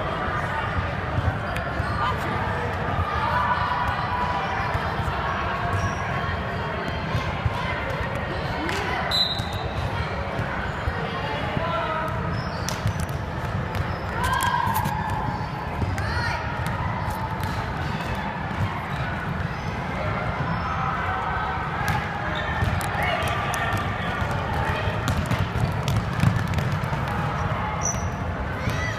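Basketball bouncing on a hardwood gym floor during a game, with scattered sharp knocks from the ball and players' feet over steady chatter of voices.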